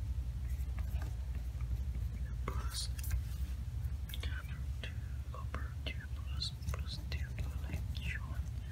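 A pen writing on paper: short, scratchy strokes come and go, more of them in the second half, over a steady low hum.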